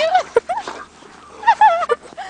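A dog giving short, high-pitched yips and whines during play, in a few quick bursts whose pitch swoops up and down.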